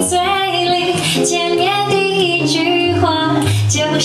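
A woman sings a melody live over instrumental jazz accompaniment, with a bass line moving underneath.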